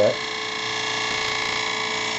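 Turning gouge cutting into the inside of a wooden bowl spinning on a lathe: the entry cut, a steady, even cutting sound over the running lathe.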